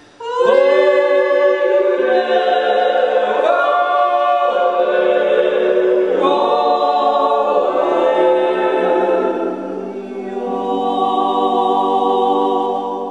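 Small mixed vocal group singing a Styrian yodel (Jodler) in several-part harmony with long held chords. The voices come in together about half a second in, ease off briefly near the end, then swell into a final held chord.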